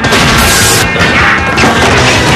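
Loud rock music with a crash sound effect over it in the first second.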